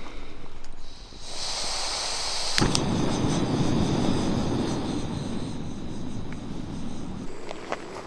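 Remote-canister gas stove burner: gas hissing as the valve is opened, a sharp pop as it lights about two and a half seconds in, then the steady rush of the burning flame, which stops shortly before the end.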